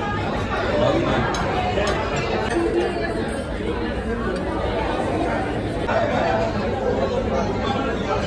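Chatter of many overlapping conversations in a busy restaurant dining hall, a steady babble with no single voice standing out.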